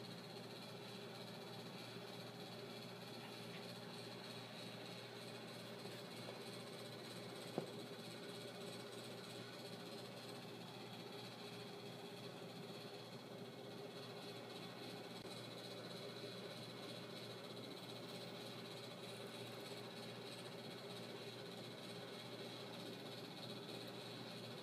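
Quiet room tone: a faint steady hum with a few even tones, and one brief click about seven and a half seconds in.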